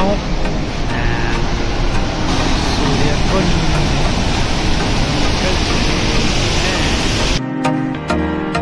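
Water rushing over a rocky cascade in a mountain river, a steady noise that grows louder a couple of seconds in. Near the end it cuts off suddenly to background music.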